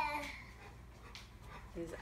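A baby's brief high, whiny vocal cry at the start, fading within about half a second.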